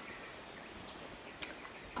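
Faint background ambience with one brief, sharp click about a second and a half in.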